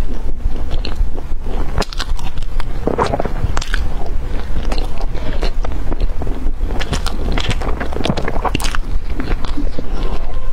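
A person chewing a mouthful of soft bread, close to the microphone: wet, irregular mouth sounds with many small clicks.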